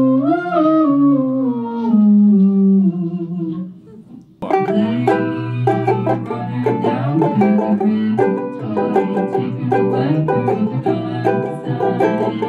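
A voice hummed into a banjo ukulele through its transducer pickup and a Micro POG octave pedal: one wavering tone doubled an octave below, sliding slowly down and fading out. About four and a half seconds in, a banjo ukulele starts being picked and strummed.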